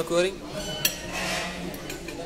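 Light clinks of tableware: one sharp clink just under a second in and another near the end, over a steady low room background.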